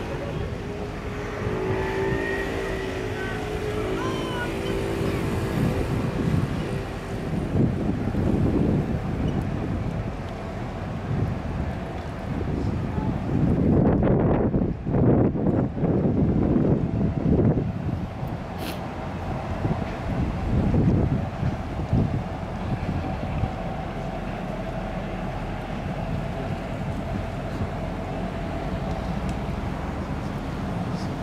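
River cruise ship passing close by with its engines running: a low steady hum carrying a held tone through the first several seconds. Wind buffets the microphone in gusts around the middle.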